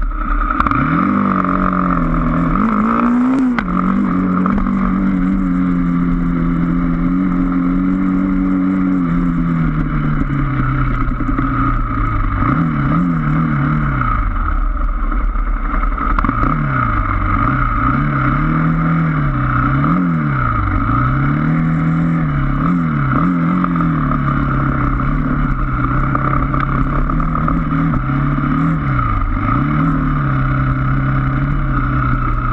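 Motorcycle engine heard from the bike itself while riding a dirt trail. The pitch holds fairly steady for the first several seconds, then falls and rises again and again as the throttle is eased and opened over rough ground. A steady higher whine runs along underneath.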